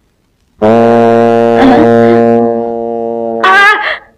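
A single low, horn-like musical note held steady for about three seconds, a comic sound-effect sting on the film soundtrack. A brief bit of a man's voice follows near the end.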